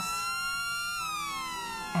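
Police siren wailing, its pitch rising for about a second and then falling.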